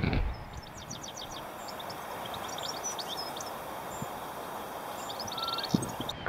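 Small birds chirping and twittering over a steady outdoor background hiss, with a quick trill of rapid repeated notes near the end.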